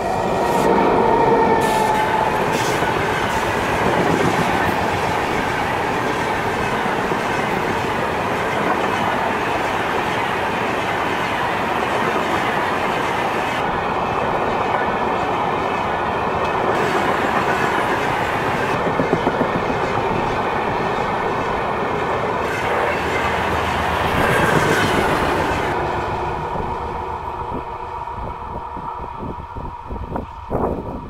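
Express trains hauled by electric locomotives passing close at speed: a continuous loud rumble and clatter of coach wheels on the rails. The sound is loudest about two-thirds of the way through and fades over the last few seconds as the end of the train draws away.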